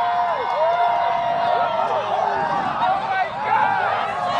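A crowd of onlookers shouting and exclaiming all at once, many voices overlapping in drawn-out whoops and calls, reacting to the onset of totality of a solar eclipse.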